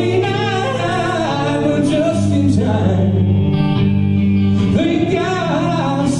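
Live church praise band playing a gospel song, a man singing the lead over guitar and sustained bass notes.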